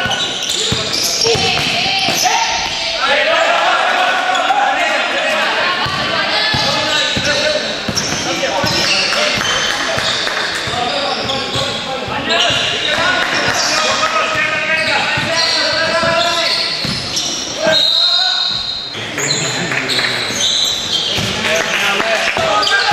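A basketball being bounced on a hard court during a game, with short repeated knocks, amid shouting voices of players and spectators, echoing in a large sports hall.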